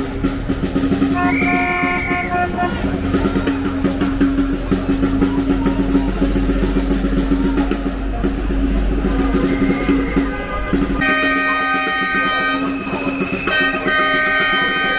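Loud street noise: a steady low rumble like an idling engine, with short horn-like tones about a second in. Near the end several held notes sound together, like a chord.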